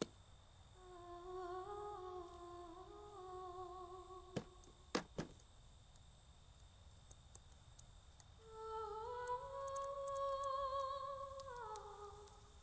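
A voice humming a slow tune in two phrases, the second higher than the first, with a few sharp clicks in the gap between them.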